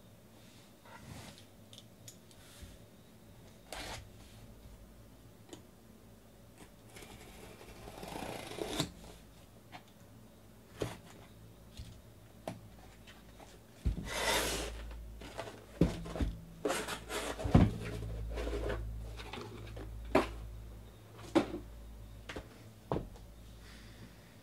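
Cardboard shipping case being handled, cut open and unpacked by hand: scattered scrapes, rustles and light knocks, a stretch of scraping or tearing about a third of the way in, then a run of heavier thumps and cardboard scuffing past the middle as the boxes inside are lifted out and set down.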